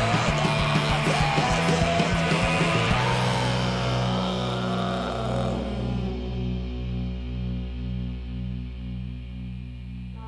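Rock band with electric guitar and drums playing loudly. About three seconds in the drums stop and a final low guitar and bass chord is left ringing out, pulsing slowly as it fades.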